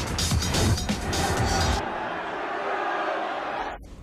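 Trailer music with a heavy beat, giving way about two seconds in to a steady rushing noise, a car's engine and road noise, that cuts off just before the end.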